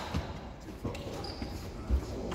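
Badminton players' feet on a wooden sports hall floor: scattered light thuds and knocks, the heaviest just before the end, with a brief high squeak a little past halfway.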